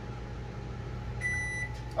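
Microwave oven beeping to signal the end of its cooking cycle: one half-second high beep a little over a second in, and a second beep starting right at the end. A steady low electrical hum runs underneath.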